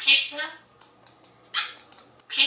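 African grey parrot talking in a mimicked human voice, asking "pizza?" in two quick syllables. A few faint clicks follow, then one short call near the end.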